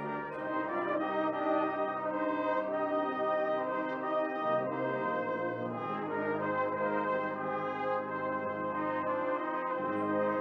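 Brass band playing, cornets to the fore, in long held chords that shift every second or two.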